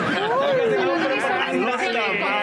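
Several voices talking over one another in a press scrum, with one long sliding voice note in the first second.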